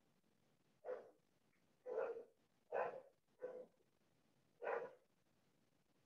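A dog barking five times in short, separate barks, roughly a second apart.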